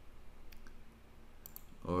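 A few computer mouse clicks: a couple about half a second in and another pair near the end.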